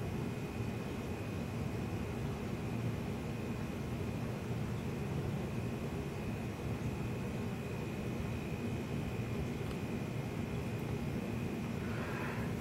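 Steady room tone: a low hum and hiss with a faint, steady high whine, and no distinct events.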